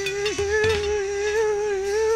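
A man's voice holding one long sung note through a microphone, wavering slightly in pitch with a brief dip about a third of a second in.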